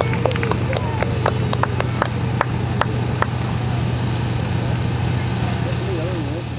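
Steady low engine drone, with a quick run of sharp clicks over the first three seconds and faint voices in the background.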